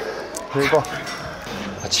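A man's short, strained vocal sound of effort during a seated cable row, followed near the end by a short hiss.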